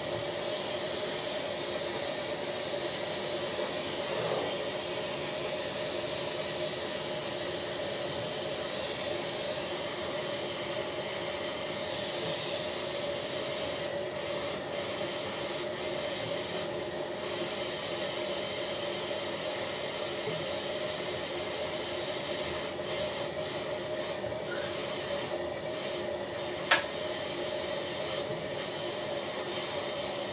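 Dental suction running steadily, a continuous hiss with a steady hum under it. A single sharp click sounds near the end.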